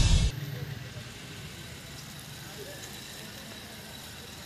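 A loud music jingle cuts off abruptly a moment in, giving way to faint, steady outdoor street ambience with distant voices.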